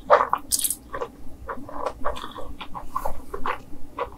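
Close-miked slurping of black bean sauce noodles, with a hissy rush about half a second in, followed by wet chewing full of quick sticky mouth clicks.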